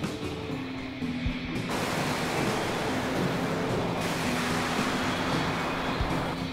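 Experimental synthesizer drone music: low held tones, joined a little under two seconds in by a dense wash of hiss-like noise that carries on to the end.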